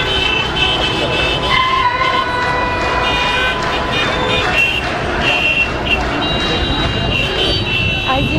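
Busy street noise of traffic and a crowd of voices, with steady high-pitched tones coming and going every second or so.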